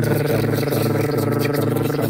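A steady, low buzzing tone with a rapid flutter, held at one pitch.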